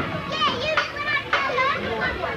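Children shouting and calling out in high voices as they play, several voices overlapping in short yells.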